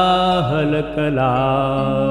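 Male voice singing a Sanskrit Shiva stotra over devotional music, stretching one syllable in a sliding, ornamented melody that settles into a held note.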